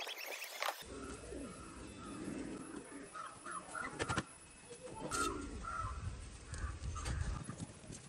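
Birds calling outdoors in short repeated calls over a low rumble, with two sharp clicks about four and five seconds in.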